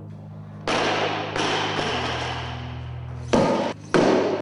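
A bumper plate being handled on the sleeve of a loaded barbell: a long metallic scrape, then two sharp clanks near the end, over background music.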